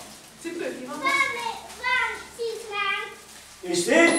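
Young children's voices, talking and calling out in short phrases.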